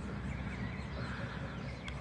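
Quiet background with a steady low hum and no distinct event.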